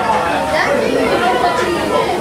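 Several people chattering at once: overlapping voices with no clear words standing out.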